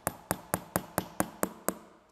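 Hammer tapping a nail into the tread of a motorcycle tyre: eight quick, even strikes, about four a second, stopping shortly before the end.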